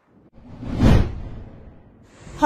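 A single whoosh sound effect that swells up, peaks about a second in and fades away, used as a transition in a news channel's logo animation.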